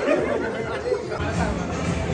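A group of men talking and calling out over each other, with music playing underneath.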